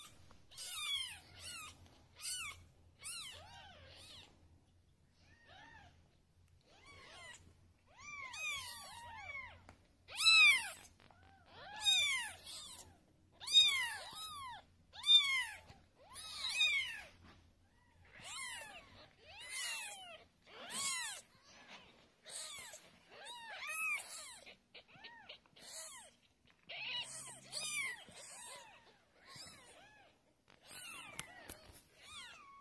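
One-week-old Ragdoll kittens mewing: a long run of short, high-pitched cries, each rising and then falling in pitch, coming one or two a second and loudest in the middle stretch.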